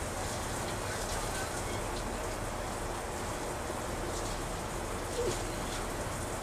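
Steady, even background hiss with no distinct events, and a faint voice about five seconds in.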